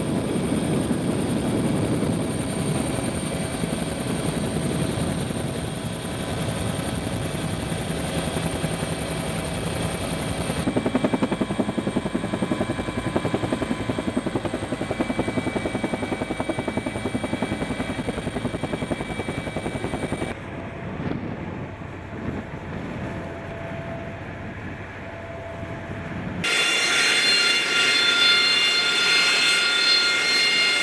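Helicopter rotor and engine noise heard from aboard the aircraft, steady with a rapid beat, across several edited shots. About three-quarters of the way through it gives way to a louder jet engine with a high steady whine, the AV-8B Harrier II's Pegasus turbofan running on the carrier deck.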